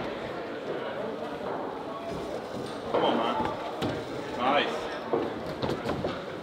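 Indistinct voices talking, with a few short knocks as a climber's hands and climbing shoes meet the plastic holds of a bouldering wall.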